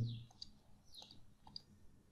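A few faint, scattered clicks from selecting drawing tools on a computer, with a few faint short high chirps.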